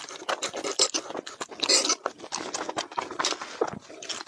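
Close-miked wet chewing of a mouthful of soft jelly pieces, with quick irregular sticky smacks and clicks of the mouth.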